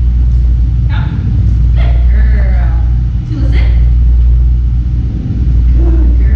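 A steady, loud low rumble with a few short words from a woman's voice over it.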